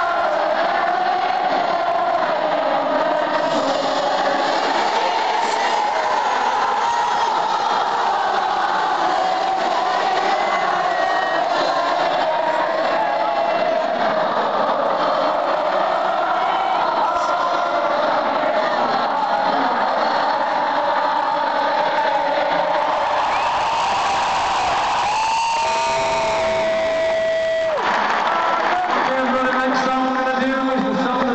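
A huge stadium crowd singing and cheering together, heard from within the audience. Near the end a single steady held tone rises above the crowd for about two seconds.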